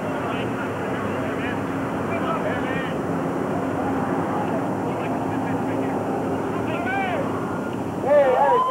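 A steady distant engine drone with a constant low hum, under faint shouted calls from players.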